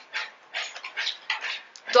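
Plastic packaging crinkling and rustling as a wrapped item is picked up and handled: a run of short, irregular crackles.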